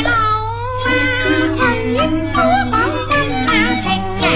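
Cantonese opera music: a high melody line slides and wavers in pitch over held lower instrumental notes. A steady low hum runs underneath.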